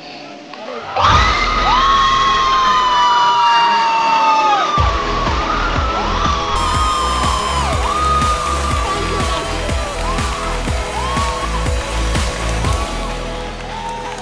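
A game-show win is celebrated. About a second in a long, loud whoop of celebration is held for a few seconds. After it comes victory music with a steady beat, with the studio audience cheering and clapping.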